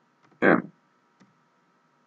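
One short spoken syllable, then a quiet stretch with two faint clicks from a computer keyboard, a little over a second apart.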